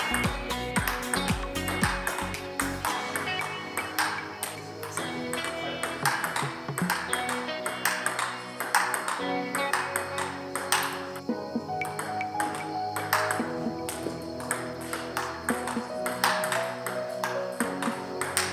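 Table tennis rally: a plastic ball clicking in quick succession off the bats and table, one bat faced with Sanwei Ghost short-pimpled rubber, over background music.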